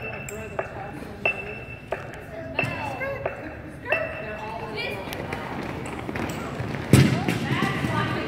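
Metronome clicking steadily, about one sharp ringing beat every two-thirds of a second, stopping about four seconds in, under background chatter of voices. A heavy thump near the end.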